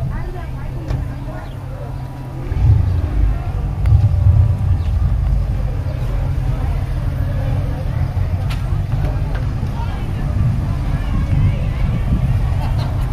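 Low, uneven rumble of wind buffeting the microphone, heavier from about two and a half seconds in, with faint voices of people talking in the background.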